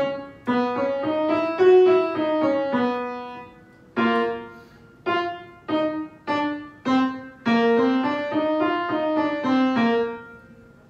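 Piano playing a singing-exercise pattern: four short detached notes, then a smooth connected run of notes about three seconds long, then a held chord, and the pattern repeats. It is the accompaniment for a breath-control drill in which the singer cuts off cleanly after each short note and sustains the legato line.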